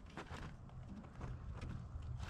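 Faint clicks and light rustling from handling bypass pruning shears on a dormant grapevine cane as the blades are set in place, over a low steady hum.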